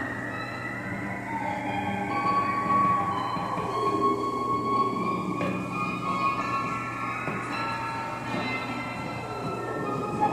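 Free improvised music from bowed cello, iPad electronics and an amplified palette: sustained, screeching tones that slowly slide up and down in pitch, layered over a steady low hum.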